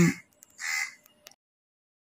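The tail of a woman's spoken word, then a single short harsh sound lasting under half a second, and then complete silence from just over a second in.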